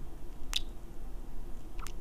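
Wet lip smacks of close-up kisses into a microphone: a sharp smack about half a second in and a softer one near the end, over a low steady hum.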